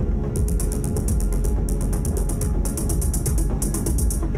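Live electronic noise music: a dense, heavy low drone with runs of rapid, high mechanical-sounding clicks, about ten a second, starting and stopping in four runs of roughly a second each.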